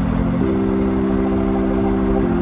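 A steady low engine-like hum, like a motor idling, that shifts up in pitch about half a second in.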